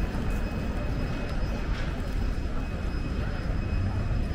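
Outdoor street ambience: a steady low rumble with indistinct voices of passers-by and a faint steady high-pitched tone.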